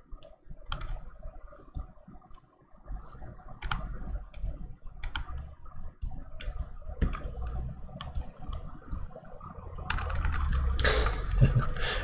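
Computer keyboard keys clicking now and then, single presses and short runs, over a low steady hum. A louder rustling noise rises in the last two seconds.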